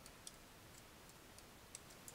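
Near silence with a few faint computer mouse clicks, spaced irregularly.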